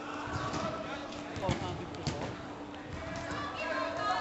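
Indoor football match sound: a ball kicked sharply a couple of times, around the middle, amid distant players' calls in a sports hall, over a steady hum.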